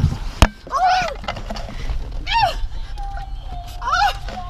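Frightened high-pitched screams, one about a second in and another just past two seconds, the second ending in a shout of "me!". A single sharp knock about half a second in is the loudest sound.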